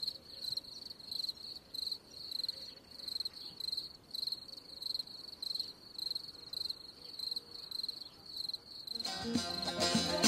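Cricket chirping steadily, about two short high-pitched chirps a second. Music starts loudly near the end.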